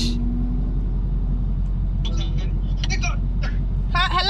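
Steady low rumble of a car engine idling, heard from inside the cabin, with brief talk about halfway through.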